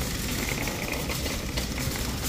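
Wire shopping cart rolling steadily over a polished concrete store floor, its wheels and basket giving a continuous low rattling rumble.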